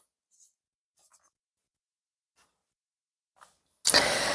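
Near silence with a few faint, short rustles. Just before the end a loud burst of noise sets in, running on into the speech that resumes.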